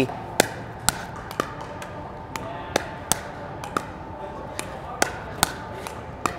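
Pickleball dink rally: paddles tapping a plastic pickleball softly back and forth, with the ball bouncing on the court between hits. About ten sharp taps, irregularly spaced roughly half a second apart.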